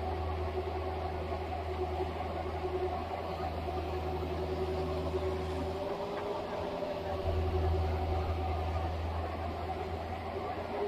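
Compact excavator running while it digs: a steady low engine hum under higher wavering tones. The low hum drops away for about a second around six seconds in, then comes back.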